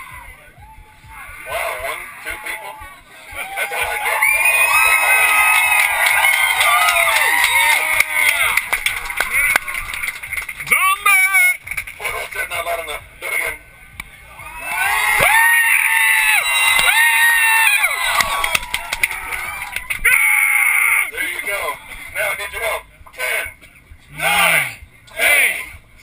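A crowd of people screaming and cheering together, many voices at once, in two long loud bouts: one from about four seconds in to about ten, and another from about fifteen to eighteen seconds in, with quieter stretches between.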